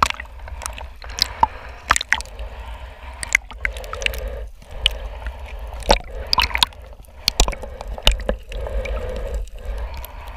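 Water gurgling and sloshing around a waterproof action-camera housing as it dips in and out of the sea surface, with many sharp clicks and pops of bubbles and water hitting the housing over a low rumble.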